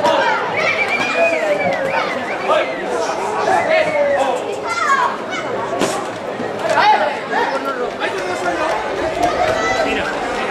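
Crowd of street spectators shouting and calling out, many voices overlapping, with a few sharp knocks among them.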